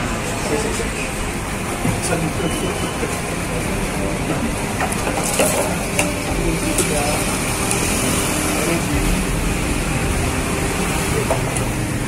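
Indistinct chatter of a crowd of people talking at once over a steady low background rumble.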